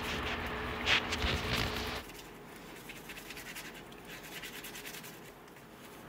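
A soft soapy sponge scrubbing the outside of a glass bottle in a sink of soapy water, wet rubbing and scratching with a louder scrape about a second in. About two seconds in it drops abruptly to a much quieter faint rustle.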